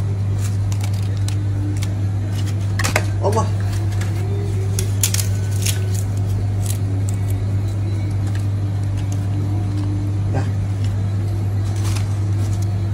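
Steady low hum, with scattered crisp crackles and rustles as fingers handle a papadum and the plastic-lined wrapping of a nasi kandar packet.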